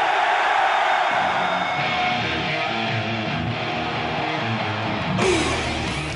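Live heavy metal with distorted electric guitar from a band on a stadium stage, played loud and steady.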